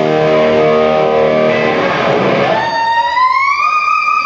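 Electric guitar playing live through an amplifier in an instrumental rock/metal piece. A held chord rings for about two seconds, then a single high note comes in, is bent upward in pitch and is sustained.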